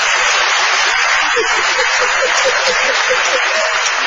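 Live audience laughing and applauding, loud and steady, with one voice laughing in short, evenly spaced bursts about one and a half to three seconds in.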